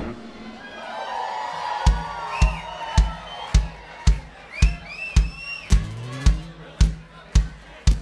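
A live rock band's song cuts off and the crowd cheers and calls out. About two seconds in, a drum kit starts a steady beat, kick drum and cymbal hit together about twice a second, as the lead-in to the next song, with shouts from the crowd over it.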